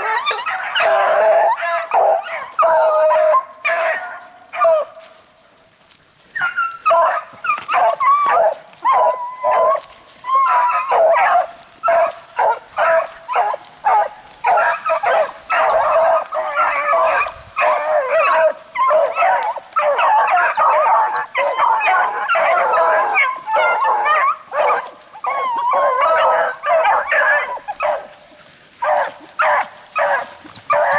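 A pack of beagles baying on the track of a cottontail rabbit, their many calls overlapping almost without a break. There is a brief lull about five seconds in.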